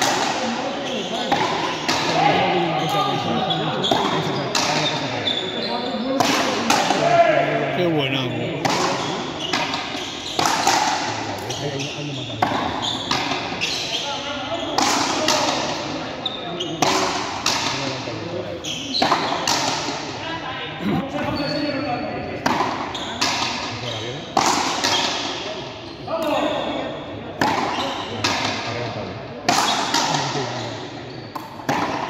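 Frontenis rally: racquets striking the small rubber ball and the ball smacking off the frontón wall and floor in quick, irregular cracks, each echoing in the large walled court. Voices talk underneath.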